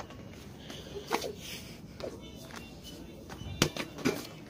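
A single sharp thump near the end as a small rubber ball is kicked across a hard store floor, over a steady background of shop noise and faint distant voices.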